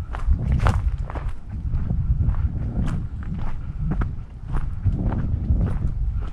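A hiker's footsteps on a trail, a string of steps at walking pace.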